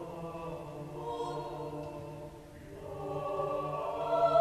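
Mixed a cappella choir of men's and women's voices singing sustained chords, easing off briefly about two and a half seconds in, then swelling louder.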